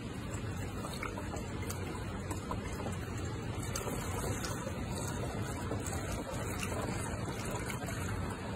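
Fog fluid pouring from a jug through a plastic funnel into a fog machine's plastic reservoir, a steady trickling stream of liquid.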